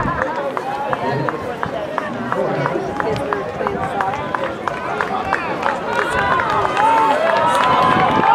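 Spectators shouting encouragement to passing middle-distance runners, several voices overlapping, over the rapid, even patter of spiked shoes striking the track.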